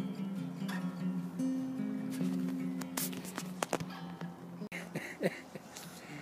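Acoustic guitar being played: sustained notes and chords ringing and changing steadily, with a few sharp clicks a little past the middle. The playing drops away near the end, where a short pitched sound is heard.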